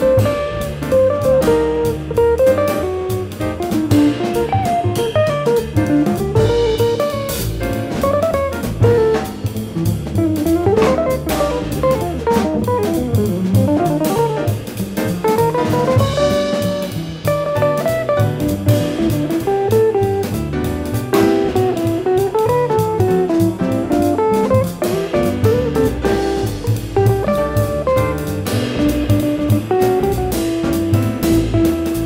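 Music played back from a Sony TC-R7-2 two-track reel-to-reel tape deck running at 38 cm/s: a jazzy number with a plucked guitar melody over a drum kit, continuous throughout.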